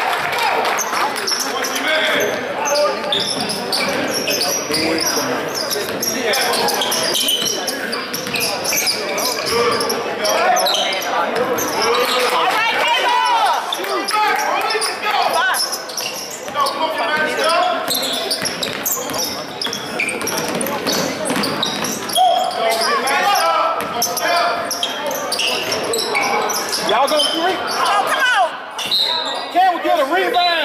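Basketball being dribbled on a hardwood gym floor during play, with shouting voices from players and spectators throughout, echoing in a large hall.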